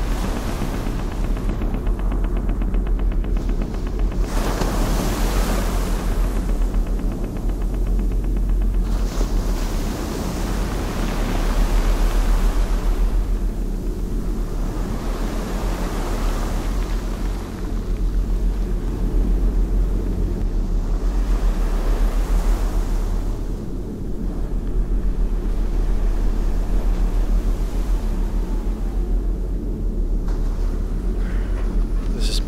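Low, steady background music over small waves washing onto a sandy shore, the surf swelling and fading every few seconds.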